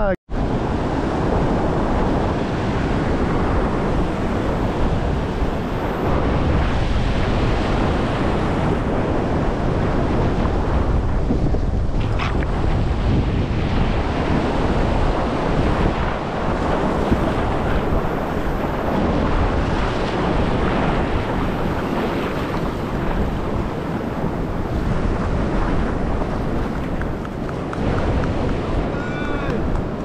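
Surf washing up the beach with wind buffeting the microphone, a steady rushing noise.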